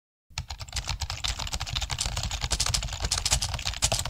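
Fast typing on a low-profile computer keyboard: a quick, continuous run of key clicks that starts a moment in.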